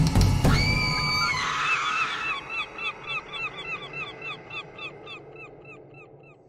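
Closing sound effect of a horror-festival logo sting. A held high tone is followed by a short chirp-like call that repeats about three times a second as an echo, fading steadily away.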